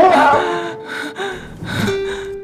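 A character's gasp at the start, followed by soft music with held notes.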